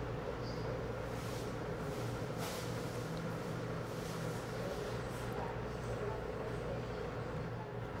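Steady low hum of the restaurant's cooling equipment, with a couple of faint rustles about one and a half and two and a half seconds in as a burrito is bitten and chewed.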